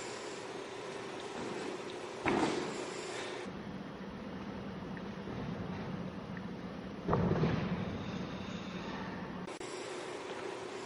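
Two dull thuds of bare feet hitting a carpeted gymnastics floor, about two seconds in and again about seven seconds in; the second is the landing of a gainer flash. A steady low room hum runs underneath.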